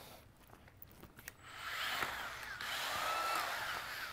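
Makita 18V LXT brushless cordless 9-inch drywall sander running with its pad in the air: the motor comes up gently over about half a second a little over a second in, as its soft start works, runs steadily with a faint high whine, and dies down just before the end.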